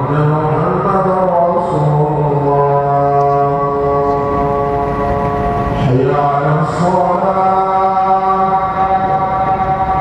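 A man chanting in long, drawn-out held notes: one long phrase, a brief break about six seconds in, then another long held phrase.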